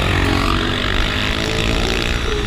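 Yamaha WR250X single-cylinder engine with a LeoVince exhaust running under way, with loud wind rush on the microphone.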